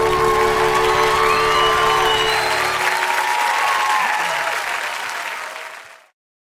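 Audience applauding over the last held chord of a live song; the music stops about three seconds in and the applause carries on, fading out near the end.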